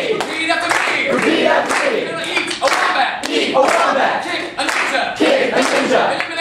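Hands clapping while voices sing over it without instruments.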